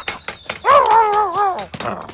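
A cartoon dog's voice: one drawn-out call whose pitch wobbles up and down, lasting about a second and coming after a few short clicks.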